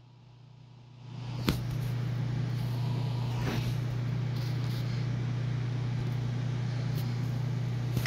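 A steady low hum with a faint hiss over it, starting about a second in, with a single sharp click just after it starts.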